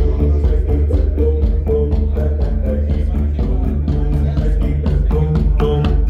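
Music playing through Borresen C3 floor-standing loudspeakers in a demo room, with a deep sustained bass drone under a quick, steady percussive beat.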